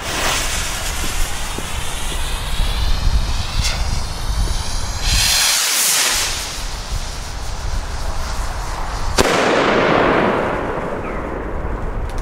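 Pyroland Populum bomb rockets launching with a rushing hiss, then a second rushing hiss about five seconds in. About nine seconds in comes one sharp bang of a shell bursting, followed by a fading rumble and crackle.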